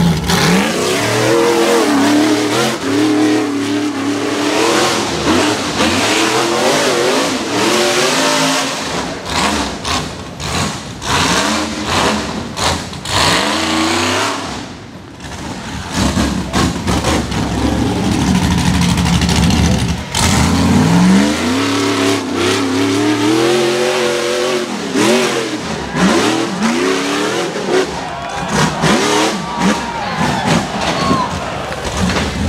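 Rock bouncer buggy engines revving hard in repeated bursts as they climb a rocky ledge, the pitch rising and falling again and again, with many sharp knocks along the way. The engine noise drops briefly about halfway through.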